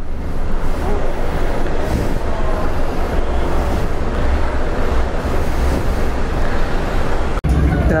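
Steady, loud low engine rumble with a wash of noise on a ferry's vehicle deck; it breaks off abruptly near the end.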